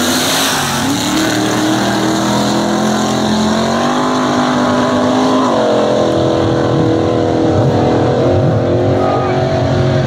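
Two drag-racing cars launching and accelerating hard down the strip, engine pitch climbing. About five and a half seconds in the pitch drops at an upshift, then the engines pull on again.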